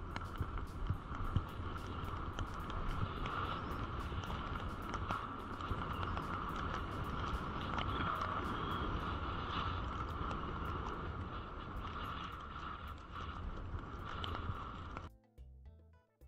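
Wind rushing over an action camera's microphone and skis hissing through fresh snow on a fast downhill run, with scattered crackles. About a second before the end this cuts off suddenly and background music takes over.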